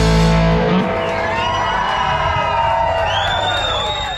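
Live country band of electric guitar, upright bass and drums ending a song: the band hits a final chord that rings on and slowly fades, and a tone slides upward near the end.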